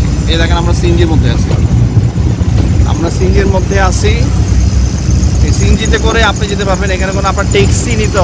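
CNG auto-rickshaw engine running as the rickshaw drives along a city road, heard from inside the open cab as a steady low rumble, with voices talking over it.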